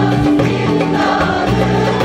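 Choir singing a Turkish popular song live with instrumental accompaniment, over a steady held bass line.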